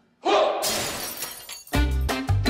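A sudden crash-like transition sound effect that dies away over about a second and a half, followed near the end by upbeat music.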